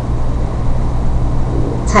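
A steady low hum runs under a pause in talk, with a woman's voice starting again right at the end.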